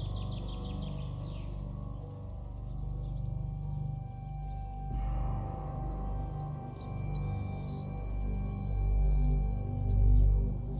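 Ambient background music: a low sustained drone with steady held tones. High bird chirps and quick trills come over it in several bursts, the last a fast run of about eight notes near the end.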